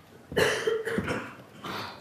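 A person coughing: one loud cough about a third of a second in, then a smaller one near the end.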